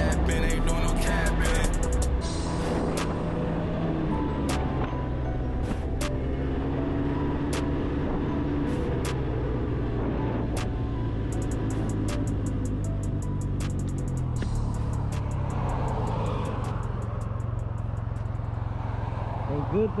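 Music with a steady beat and singing, over the steady running of a Can-Am Ryker Rally 900's three-cylinder engine.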